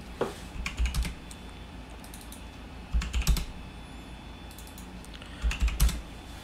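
Computer keyboard typing in three short bursts of keystrokes: number values being entered into form fields.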